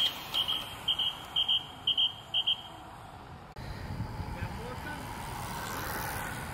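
High-pitched electronic beeping in quick double beeps, about two pairs a second, for nearly three seconds, over outdoor road ambience. It stops at a cut, after which steady outdoor background noise remains.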